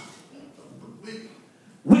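A pause in a man's preaching, filled only by faint, brief murmurs of voices in the room; his voice comes back suddenly, loud, just before the end.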